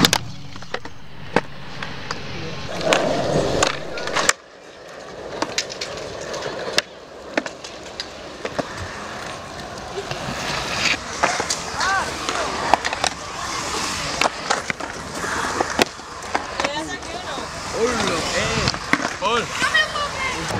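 Skateboard rolling over paving stones and concrete: a steady rolling rumble of the wheels broken by sharp clacks and knocks of the board, with one loud knock about four seconds in.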